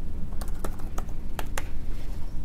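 Laptop keyboard typing: irregular key clicks, about eight in two seconds, over a steady low hum.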